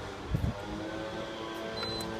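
Leaf blower running at a steady pitch, with a short high tone near the end.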